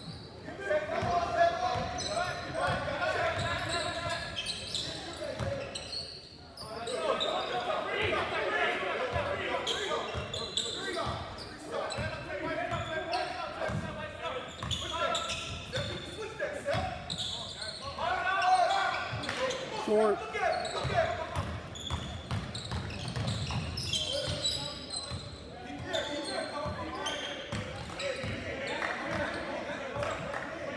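Basketball game sounds echoing in a large gymnasium: a ball bouncing on the hardwood court and players and coaches calling out in indistinct shouts.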